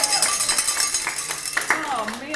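A small group applauding, the claps thinning out and stopping shortly before the end.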